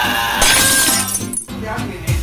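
A person screaming a long, harsh 'ahh' that breaks off suddenly about a second and a half in, over background music.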